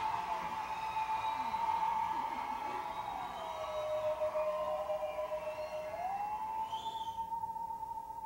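Musical saw bowed, holding one long sustained note that slides down in pitch about three seconds in, stays lower for a few seconds, then slides back up.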